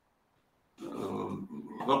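Silence, then about a second in a man's low voice on the call audio makes a drawn-out hesitation sound that runs into speech near the end.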